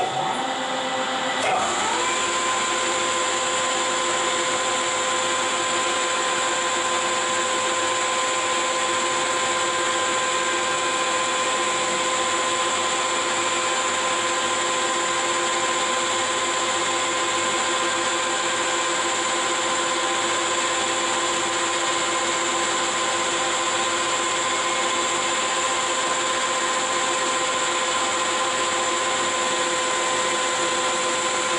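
Metal lathe starting up, its spindle and geared headstock spinning up with a rising whine over about two seconds, then running steadily with a constant gear whine.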